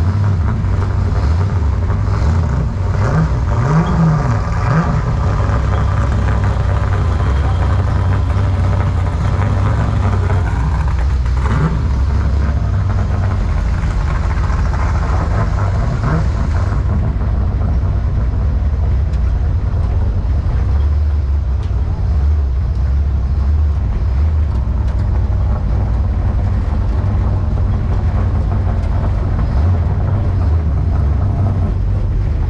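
A race car's engine running at low speed, heard close up from its hood, with a few short revs about three to five seconds in, then a steady low rumble as the car rolls along.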